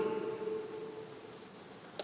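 Quiet room tone in a large hall. The end of a man's last word over the microphone dies away in the first half second, leaving a faint even hiss.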